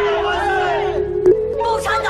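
Several men and women shouting a slogan together in Mandarin, "Long live the Communist Party!", over a held note of film score. A single short sharp crack cuts in just over a second in.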